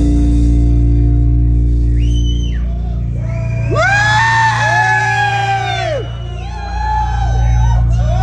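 Live metal band heard loud from the crowd: a heavy, sustained low guitar drone runs throughout. Over it, from about two seconds in, long yelled voices rise and fall, several overlapping in the middle.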